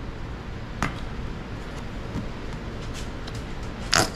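Low room noise with a faint click about a second in and a few small ticks, then near the end a short, loud squirt from a plastic squeeze bottle of mustard into a glass mixing bowl.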